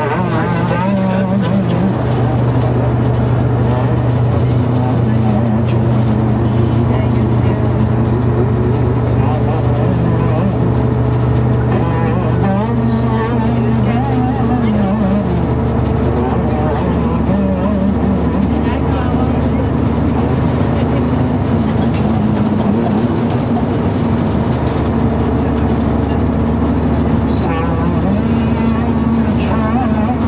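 A man's voice amplified through a coach's PA microphone, over the steady drone of the bus engine and road noise.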